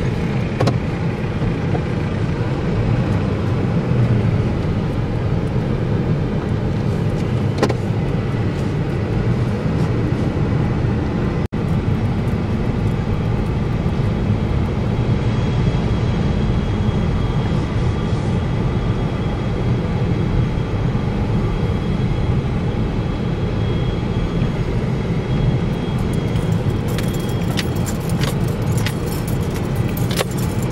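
Steady low rumble of a car's engine and tyres heard from inside the cabin while driving slowly over bumpy roads. A few light clicks and rattles come near the end, and the sound cuts out for an instant about a third of the way in.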